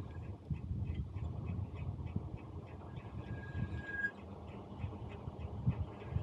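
Wind rumbling on the microphone of a bicycle-mounted camera while riding, with faint irregular ticks and a thin high tone coming and going, strongest about three to four seconds in.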